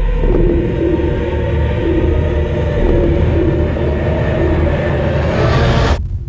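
Film trailer score and sound design: a deep, loud rumble under a low, repeating droning tone, swelling into a rising rush of noise that cuts off abruptly at the end.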